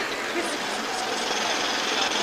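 Steady background noise, an even hiss-like haze with no clear rhythm or strikes.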